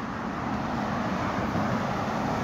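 Road traffic: the steady tyre and engine noise of cars on a multi-lane road, growing a little louder near the end as a car comes past close by.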